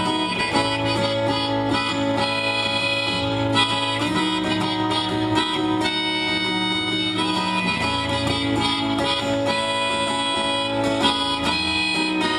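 Instrumental passage of an acoustic guitar strummed steadily while a harmonica plays long held notes over it, moving to a new note every second or two.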